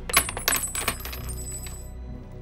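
A small metal object dropping onto wooden floorboards, bouncing several times with sharp clicks and a high metallic ring that fades out near the end.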